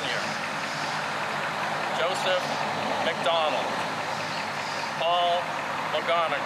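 A voice speaking short words with pauses between them, over steady background noise.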